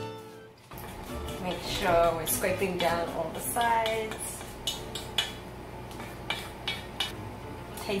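A utensil clinking and scraping against a stainless steel mixing bowl as cake batter is scraped off a stick blender, with a few sharp clinks in the second half. The blender's motor is not running.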